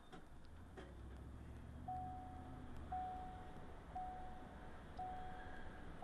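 A repeating electronic warning beep, one steady mid-pitched tone a little under a second long about once a second, starting about two seconds in. Beneath it, a low rumble of the moving car that fades about halfway through.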